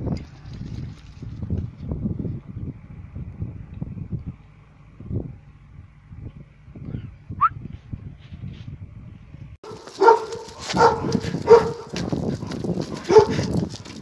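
A dog barks four times, about a second apart, in the last few seconds. Before that there is only a low, uneven rumbling noise.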